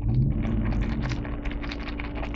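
Fork stirring a bowl of sauced Kraft Dinner macaroni and cheese: "macaroni noises", a run of many quick small wet clicks and squishes from the noodles.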